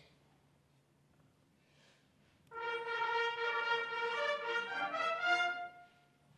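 A trumpet section sounds a short signal call in several parts, several notes over about three seconds. It comes in about two and a half seconds after a quiet pause and stops just before the end.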